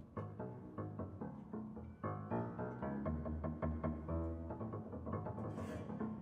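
Live ensemble music led by piano: a busy stream of short, detached notes over low bass notes. A brief hiss sounds near the end.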